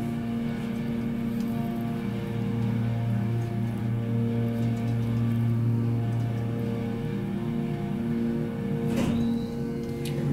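Hydraulic elevator's pump motor and pump running under load as the car rises, a steady hum of several tones with a rough noisy edge; the noise is a sign of the hydraulic system being low on oil. About a second before the end there is a sharp knock and the hum changes as the car arrives at the floor.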